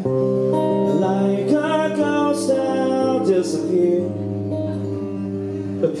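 Live music: strummed acoustic guitar with sustained chords, and singing without clear words.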